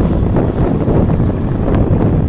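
Loud wind buffeting the microphone, a steady low rumble, recorded from a moving vehicle.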